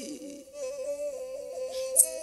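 Meitei pena, a bowed string instrument, playing a short ornamented melody line just after a sung phrase trails off. A sharp jingle, the bells on the pena's bow, sounds at the very end.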